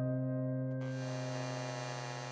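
A low sustained hum from an ambient music intro. About three-quarters of a second in, a bright electrical buzz of fluorescent ceiling lights coming on joins it.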